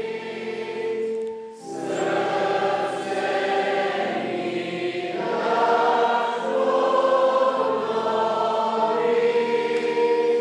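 Church congregation singing a hymn together in long held notes, with a short break between lines about a second and a half in.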